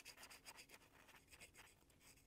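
Near silence with very faint, irregular scratching: a fine tip-cleaner wire file worked back and forth inside a lawnmower carburettor's main jet, scraping old ethanol fuel deposits off the jet's bore walls.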